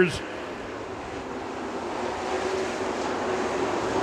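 A pack of dirt-track race cars running on the track, their engines heard as a steady noisy drone that grows slowly louder as the cars come closer.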